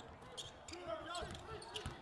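Basketball being dribbled on a hardwood court during live play, with scattered bounces and faint court noise.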